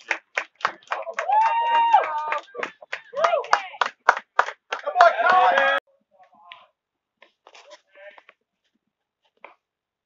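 Spectators at a baseball game clapping fast and evenly, about four to five claps a second, with voices yelling and cheering over the claps. The sound cuts off abruptly a little before six seconds in, leaving only faint scattered noises.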